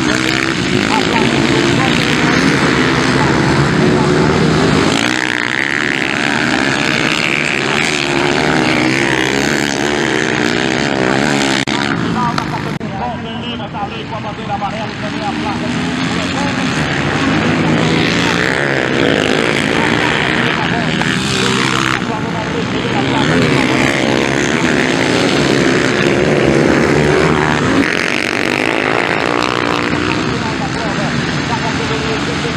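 Several motocross bikes' engines revving hard as they race around a dirt track, pitch rising and falling repeatedly as riders open the throttle and shift, with a short lull a little before the middle.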